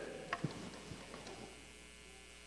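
Steady low electrical mains hum, with two faint short clicks about half a second in.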